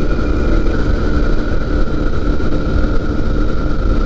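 Pegasus Quik flexwing microlight's Rotax 912 engine and propeller running steadily in flight, heard from the open cockpit with heavy wind rumble on the microphone.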